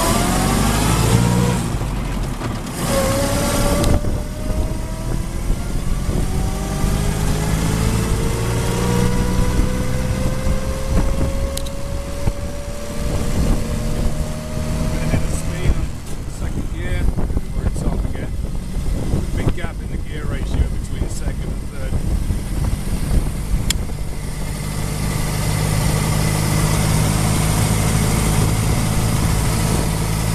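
1924 Bullnose Morris Cowley's four-cylinder side-valve engine pulling away from a stop, with the whine of its straight-cut gearbox's intermediate gears. A short rising whine comes first, then after a pause a long whine that climbs slowly for about twelve seconds as the car gathers speed, then stops. After that the engine runs on without the whine, with some knocks and rattles.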